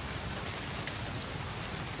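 Steady rain falling.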